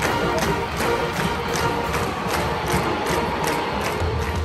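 Marching band playing in a stadium: drums hit a steady beat about two and a half times a second under held brass notes.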